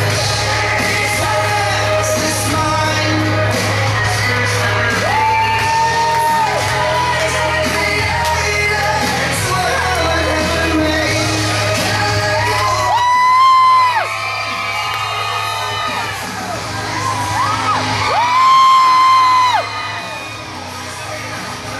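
Wrestler's entrance music: a song with a singer over a steady bass line, the singer holding long high notes three times, about five, thirteen and eighteen seconds in.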